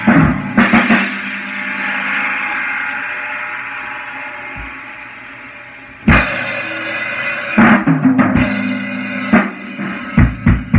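Acoustic drum kit played by hand: a quick run of drum and cymbal strokes, then cymbals ringing out in a long wash that slowly fades. About six seconds in comes a loud cymbal crash, followed by more bass drum, snare and tom strokes.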